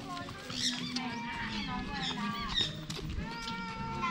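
Many birds calling and chirping at once, short whistles and chirps overlapping, over a low murmur of voices.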